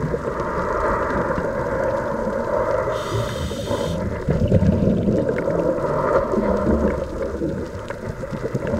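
A scuba diver's open-circuit regulator, heard underwater through a camera housing as a continuous muffled rushing. A short hiss comes about three seconds in, then a louder low rumble of exhaled bubbles.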